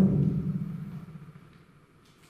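A man's reading voice trails off into a low, fading rumble that dies away over about a second and a half, leaving near-quiet room tone.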